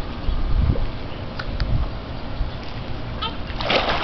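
A toddler jumping or being lifted into a swimming pool, with a splash of water starting near the end. A low rumble of wind on the microphone runs underneath.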